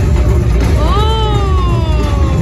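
Heavy low rumble of wind buffeting a phone microphone outdoors. About a second in, a single long voice call rises briefly, then falls slowly in pitch.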